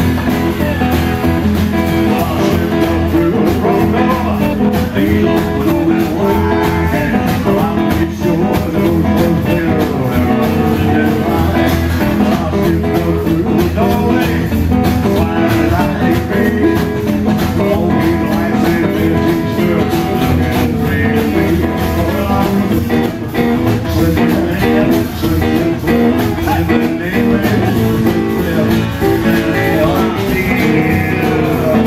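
Live rockabilly band playing, with electric guitar, acoustic guitar, upright double bass and drums.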